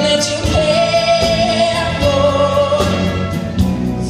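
Live big band with saxophones, brass and drums playing behind a male singer, with a long held note through the middle.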